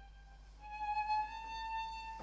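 Violin playing alone, bowing long held notes that step upward in pitch, with no piano underneath.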